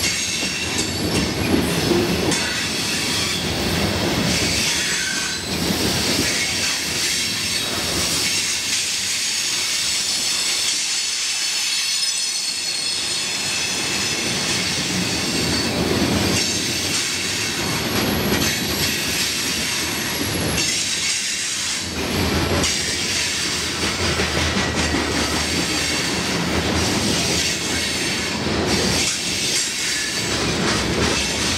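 Freight train boxcars rolling past close by, steel wheels on rail with a steady high-pitched squeal over the rolling rumble.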